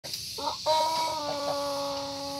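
Pelung rooster, an Indonesian long-crowing chicken breed, beginning its long crow: a brief note about half a second in, then a long held note that steps down slightly and carries on.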